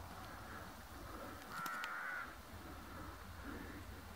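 A bird gives one short harsh call about a second and a half in, over a faint, steady low rumble.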